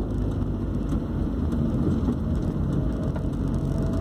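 Steady low rumble of a car travelling at highway speed, heard from inside its cabin: tyre and engine noise.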